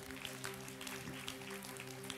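Soft background music: a single chord held steadily, with a few faint ticks.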